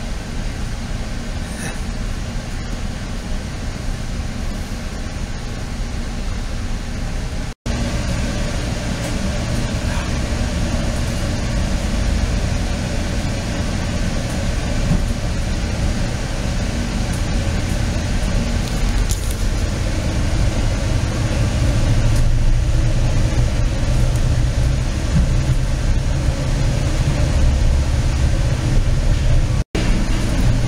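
Inside a moving Virginia Railway Express double-decker commuter coach: the train running steadily with a low rumble of wheels on rail, growing a little louder in the last third. The sound cuts out for an instant twice.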